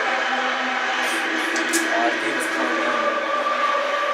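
Television broadcast of a football match playing in a room: steady stadium crowd noise with faint voices over it.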